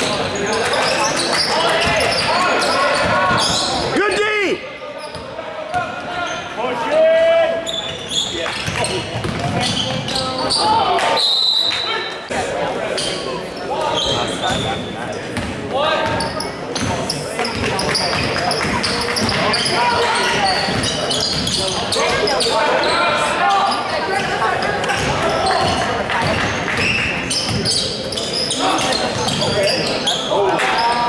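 Basketball dribbled on a hardwood gym floor during a game, with a steady babble of players' and spectators' voices echoing in the large hall.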